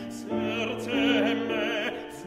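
A classical art song: a singer sustaining notes with a strong, even vibrato over piano accompaniment.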